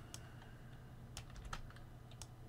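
A few separate keystrokes on a computer keyboard, faint and irregular, while code is being typed.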